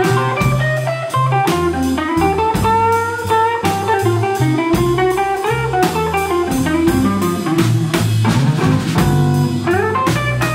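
Live blues band playing: an electric guitar plays a lead line with bent, gliding notes over a walking bass and a Gretsch drum kit.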